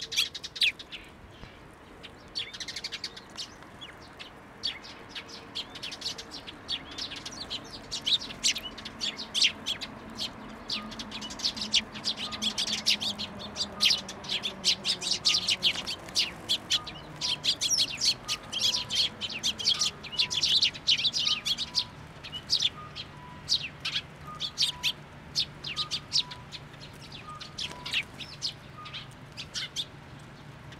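A flock of Eurasian tree sparrows, many of them fledged young, chirping in quick, overlapping calls that grow denser in the middle stretch.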